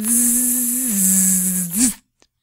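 A woman's voice making a long held hum with a strong hiss, meant as an imitation of a heartbeat. The tone stays level, steps down in pitch about halfway through, and ends with a short upward swoop.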